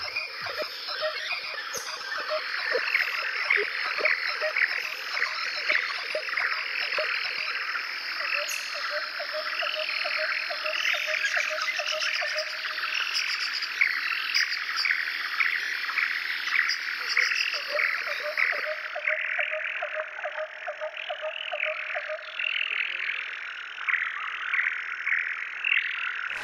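A chorus of frogs croaking, many short calls repeating and overlapping, with a lower trilling call that comes in and out.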